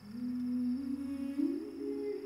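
Soft film background score: a slow melody of a few held notes, climbing step by step.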